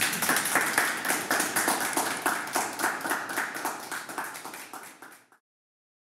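Live audience applauding, loudest at first and dying down over about five seconds, then cut off suddenly.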